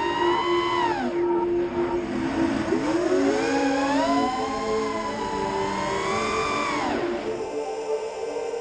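FPV racing quadcopter's brushless motors whining with the throttle: the pitch drops about a second in, climbs again around three seconds in and holds high, then falls away shortly before the end. Background music runs underneath.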